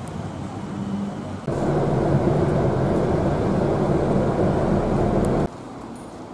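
Steady engine-and-road rumble of a motor vehicle close by. It starts abruptly about a second and a half in, runs loud and even, and cuts off suddenly shortly before the end.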